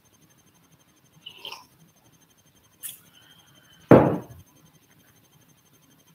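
Handling noises close to the microphone: a faint rustle a little after a second in, a sharp click near three seconds, and a louder thump about four seconds in.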